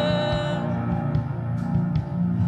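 Worship band music with guitar, in a short pause between sung lines; a note is held briefly near the start.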